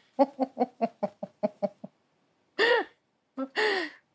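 A person laughing: a quick run of short staccato laughs, about five a second, then a pause and two longer, higher wheezy laughs near the end.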